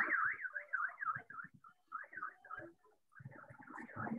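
Car alarm warbling, its tone sweeping up and down about four times a second, breaking off twice briefly. It comes through a video-call microphone.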